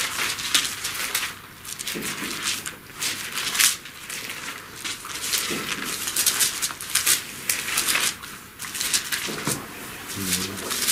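Bible pages being turned while searching for a passage: irregular dry rustling and crackling, a few bursts a second, loudest a little past halfway.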